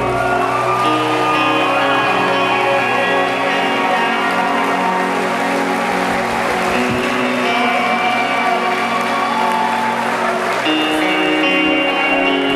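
Live rock band playing, led by electric guitar ringing out long, sustained chords; the deep bass end drops away about half a second in, leaving the guitars held over a thinner backing, and the chord changes near the end.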